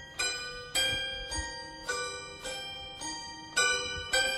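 Toy piano playing a slow series of single notes, about one every half second. Each note is a hammer striking a metal rod, giving a sharp ping that rings on and fades before the next one.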